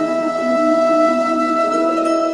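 Instrumental devotional music: a flute holds one long steady note over a softer, changing accompaniment.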